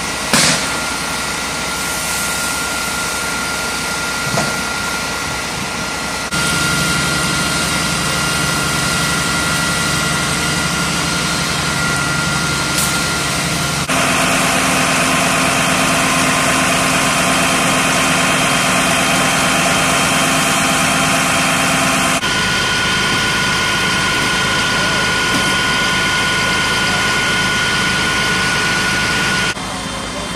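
Fire engine's engine running steadily while driving its water pump for the hose line, a dense hiss with a steady hum and whine over it. The sound changes abruptly at each of several cuts, about every seven or eight seconds.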